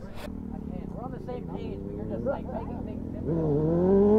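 Sport motorcycle engine accelerating, its pitch climbing steadily and getting louder from about three seconds in, as a rider sets up a wheelie.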